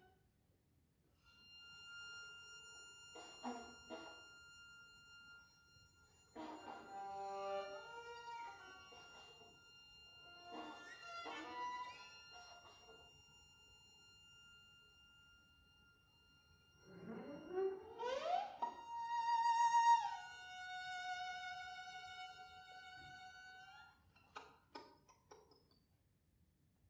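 Contemporary classical music on bowed strings, sparse and quiet: a faint high held tone under short scattered figures separated by silences. About two-thirds through, a quick rising glide leads into a long held high note that drops a step and fades out, with a few brief sounds near the end.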